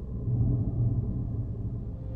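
Low, steady rumbling drone with no clear pitch or rhythm, the deep background sound of an animated film's soundtrack.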